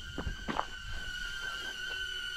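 Hover selfie drone hovering and following close by, its propellers giving a steady high whine, with a few footsteps on gravel early on.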